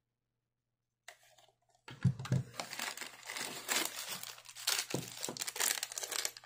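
A small clear plastic bag holding screws and wall plugs crinkling as it is handled, starting about two seconds in and going on in a run of crackles.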